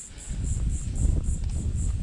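Low rumbling and faint scraping as an orange handheld pinpointer is pushed and dragged through loose dry beach sand, with a few small ticks.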